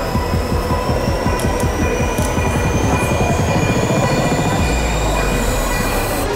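Escalator running: a steady mechanical rumble with a thin high whine that slowly rises in pitch, heard in a large, crowded hall.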